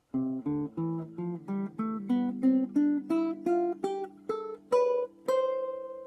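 Acoustic guitar playing a C major scale as single plucked notes, climbing evenly through two octaves from low C to high C at about three notes a second. The last, high note is held and left ringing.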